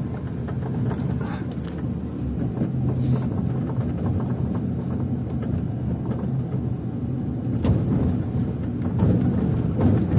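A car's engine and tyre noise heard from inside the cabin while driving slowly along a city street: a steady low hum. There is one short knock about three-quarters of the way through.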